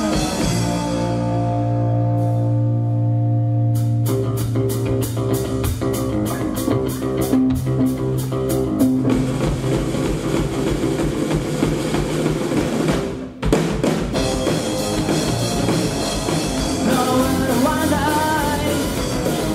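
Live rock band playing an instrumental passage on electric guitar and drum kit. Held low guitar notes open it, then a steady drum beat of about four strokes a second comes in. The band drops out briefly about 13 seconds in, then comes back at full volume.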